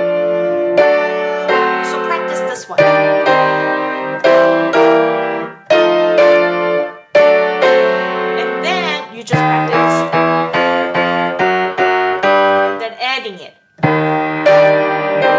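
Piano played with both hands: a steady run of struck, held chords over a moving bass, with short breaks about seven seconds in and just before the end.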